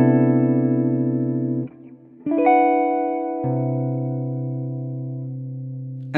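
Hollow-body electric jazz guitar, clean tone, playing extended C major-seventh chord voicings (added 9th, 13th and sharp 11th). One chord rings and is stopped a little under two seconds in; a second chord is struck soon after, a low note joins about a second later, and it is left to ring and fade.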